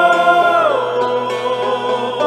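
Music: a sung vocal note held, then sliding down in pitch about half a second in and settling on a lower held note, over sustained accompaniment.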